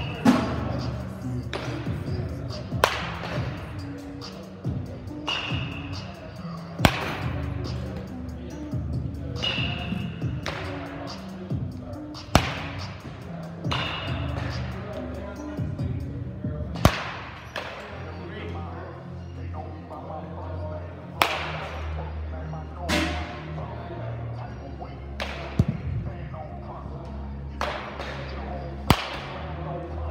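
Baseball bat striking pitched balls in an indoor batting cage: about nine sharp cracks a few seconds apart, each with a short ring in the hall. Background music plays throughout, with faint chatter.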